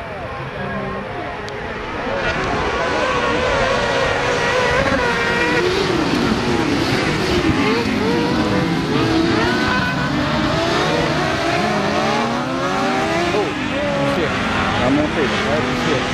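A pack of kartcross buggies racing on a dirt track: many engines running at once, their pitches rising and falling as they rev up and change gear, growing louder about two seconds in.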